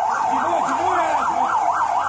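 Emergency vehicle siren in a fast yelp, its pitch sweeping up and down about four times a second, with a fainter, lower wail rising and falling more slowly beneath it.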